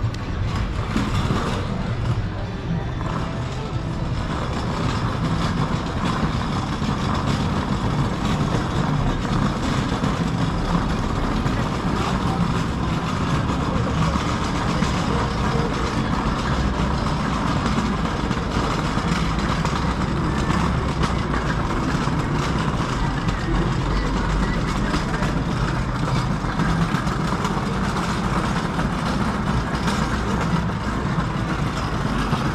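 Steady street ambience of a pedestrian shopping street heard while walking: an even low rumble of background noise with scattered voices and faint music from the shops.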